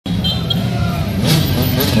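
A motor vehicle's engine running steadily at low revs, with people's voices over it.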